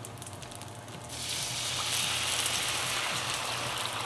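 Water poured from a glass into a hot, oiled frying pan of potstickers: a faint frying hiss, then about a second in the water hits the hot oil and the sizzling rises sharply and holds steady. This is the steam-frying stage, the water added after the dumpling bottoms have browned.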